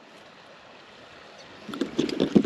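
A low steady hiss, then from about one and a half seconds in a quick run of small clicks and rustles as a hooked trout is unhooked in a rubber-mesh landing net.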